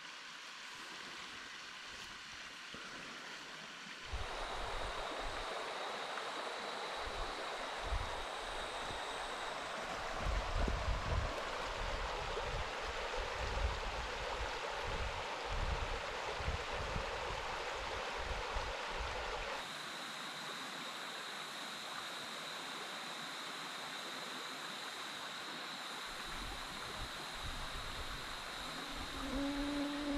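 Shallow, rocky brook flowing over stones: a steady rushing of water. It gets abruptly louder about four seconds in, with some low, uneven rumbling, and changes abruptly again at about twenty seconds.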